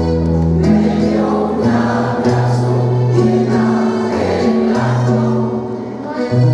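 Women's choir singing a habanera, with held notes in several voices that change about every second and a brief breath between phrases near the end.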